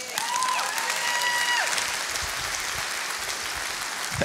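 Congregation applauding after a sermon line, the clapping slowly thinning out. A held call from someone in the crowd rides over it in the first second and a half.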